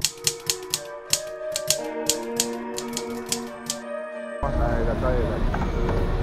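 A run of sharp, irregular clicks, about a dozen in four seconds, like typewriter keys, over a held musical chord. Both stop abruptly about four and a half seconds in, giving way to outdoor background noise and voices.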